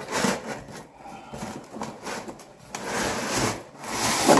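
A plastic camping coffeemaker being slid out of its cardboard box by hand: cardboard scraping and rustling against the unit, with a few light knocks and a longer rub near the end.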